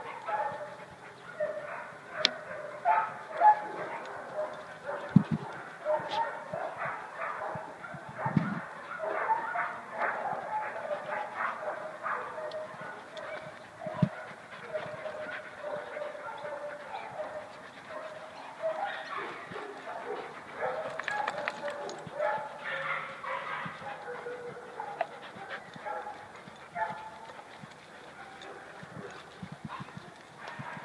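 Dogs barking, overlapping and continual, with a few low thumps about five, eight and fourteen seconds in.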